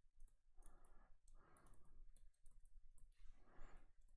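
Near silence with faint scattered clicks and soft taps from a stylus writing on a tablet screen.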